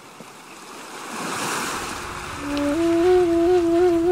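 Ocean surf washing in and swelling to a peak, then a flute melody enters about halfway through over the waves, holding long notes with small ornamental turns.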